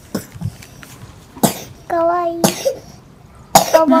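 A child coughing twice, each cough followed by a brief voiced sound: one about a second and a half in, the other near the end.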